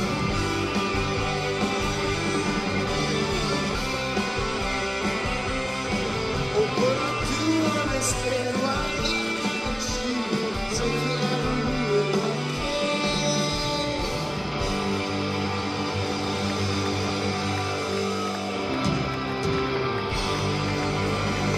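A rock band playing live: several electric guitars over bass and drums, loud and continuous.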